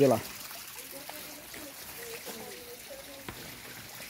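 Steady trickle of water running in a small garden fish pond, with faint voices in the background.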